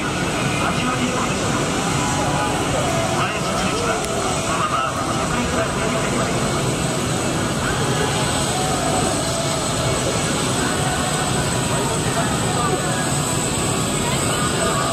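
Twin-engine turboprop airplane flying by overhead, its engine and propeller noise a steady drone, with people talking over it.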